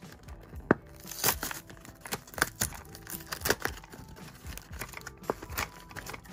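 Cardboard blind box being torn open by hand: crinkling and tearing of the card with scattered sharp clicks, the loudest a snap about 0.7 s in.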